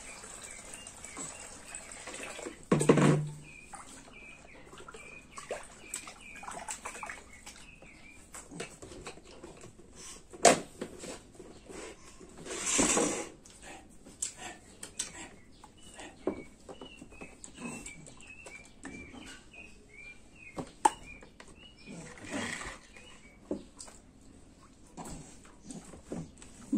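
Water poured from a vacuum flask into a plastic baby bathtub at the start, then a loud thud about three seconds in. Short bird chirps repeat throughout, with scattered knocks and a brief noisy rustle about halfway through.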